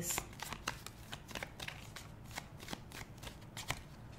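A tarot deck being shuffled by hand: a quick run of soft card clicks and flicks, densest in the first second and thinning out afterwards.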